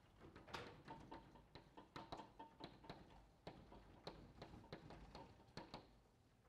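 Faint chalk tapping and scratching on a blackboard as capital letters are written: an irregular run of small, sharp ticks, several a second.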